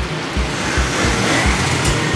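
Steady background street noise, traffic-like, with a low, regular thump about three times a second underneath.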